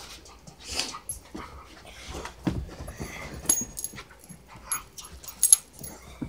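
Dogs playing and jumping up on a person, with dog vocal sounds, a low thump about halfway in, and several sharp high clinks, the loudest near the end.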